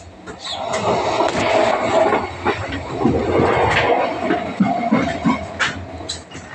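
Running noise of a Cityshuttle passenger train heard from inside the coach: wheels rumbling and rattling on the track, with scattered knocks. It swells about a second in and eases near the end.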